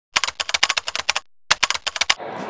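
Rapid typing: a burst of quick, sharp key clicks lasting about a second, a short pause, then a second, shorter burst.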